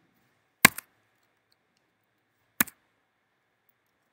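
Computer keyboard keys struck while editing code: a sharp keystroke about half a second in, followed at once by a lighter one, and another single keystroke about two and a half seconds in.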